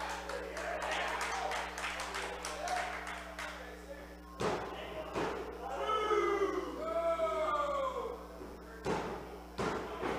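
Wrestling pin count: the referee's hand slaps the ring mat twice, about four and a half and five and a half seconds in, with more thuds on the ring near the end. Crowd voices shout in a large hall between the slaps.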